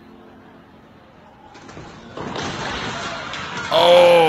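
Storm-force wind: a faint low hum at first, then a rushing wind noise that rises about one and a half seconds in and grows louder after two seconds. A voice cries out, falling in pitch, near the end.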